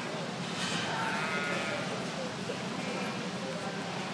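A lamb bleating: one long, wavering call starting about half a second in, with a fainter bleat about three seconds in, over the steady murmur of the arena.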